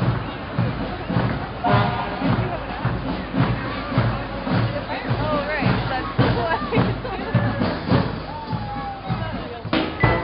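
Drum beats at a steady marching pace, about two a second, under the voices and chatter of a street parade crowd.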